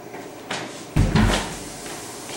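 A door latch clicks, then about a second in a heavy wooden door thuds twice in quick succession.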